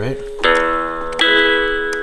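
Mattel Coco light-up toy guitar sounding two guitar chords, one about half a second in and a second a little over a second in, each ringing on and fading slowly.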